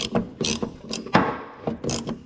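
Socket ratchet clicking in short bursts, about two a second, as it is swung back and forth to spin off the 1-1/4 inch nut on a boat's livewell pickup fitting.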